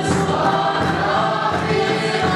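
A congregation singing a hymn together, many voices at once, steady and unbroken.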